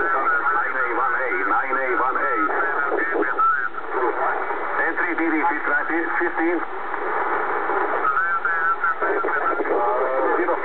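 Amateur radio voice received in upper sideband on the 10-metre band by a Kenwood TS-690S transceiver tuned to 28.450 MHz, heard through the radio's speaker: narrow, telephone-like speech over a steady background hiss.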